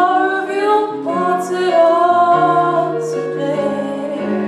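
A woman singing solo into a microphone, holding long notes with vibrato, accompanied by sustained keyboard chords.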